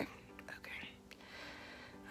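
Faint breathy whispering from a woman, over a faint steady hum of low tones.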